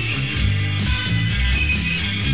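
A rock band playing live, with guitar prominent.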